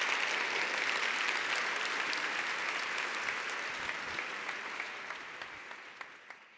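An audience applauding: dense, sustained clapping that gradually fades out toward the end.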